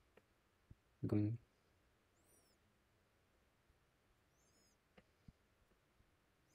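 A few faint computer mouse clicks, two near the start and two near the end, with faint high-pitched chirps twice in between.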